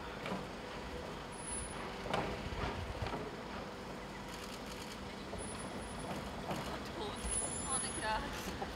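Low, steady rumble of a motor vehicle engine running, with faint voices talking on and off.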